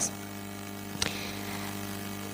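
Steady electrical mains hum from the microphone and sound-system chain, a low buzz made of several evenly spaced steady tones, with one faint click about a second in.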